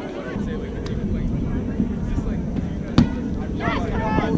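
Wind rumbling on the microphone with distant players' shouts, and one sharp thump of a rubber kickball being kicked about three seconds in, followed by a short shout near the end.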